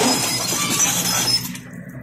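Broken brick and concrete rubble clattering and crunching as it tumbles from an excavator bucket onto a debris pile, dying away about a second and a half in. The excavator's engine runs steadily underneath.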